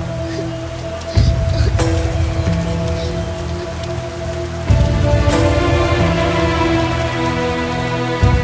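Heavy rain with a deep rumble that surges suddenly about a second in and again about five seconds in, under background film music with held notes.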